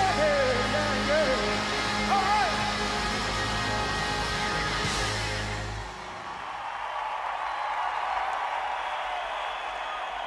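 A live rock band finishes a song, with a singer's voice wailing over the last bars. The band stops about six seconds in, and crowd cheering and applause carry on after it.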